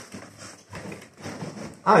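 Hands rummaging in a cardboard box of moped engine parts: irregular knocks, clinks and rustles of parts and packaging.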